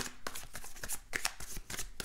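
Tarot cards being shuffled and handled in the hands: a quick, irregular run of card flicks and slides.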